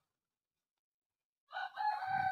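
Silence, then about one and a half seconds in a rooster starts crowing.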